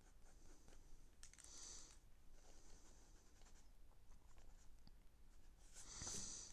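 Faint scratching of a pencil on paper, a few short strokes as lines are sketched, with a stronger stroke a little after one second in and another near the end.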